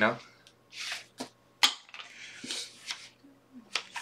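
Playing cards being gathered off a felt blackjack table and slid out to deal: soft swishes of card on felt with a few sharp clicks.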